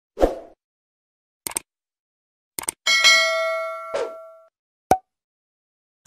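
Subscribe-animation sound effects: a few short clicks, then a bell-like ding about three seconds in that rings out for over a second, followed by two more clicks.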